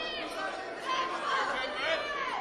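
Several people's voices shouting and chattering at once, calling out over a wrestling bout.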